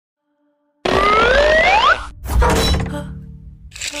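An added music-like sound effect. After nearly a second of silence comes a loud noisy burst with rising pitched glides lasting about a second, then a shorter second burst that fades.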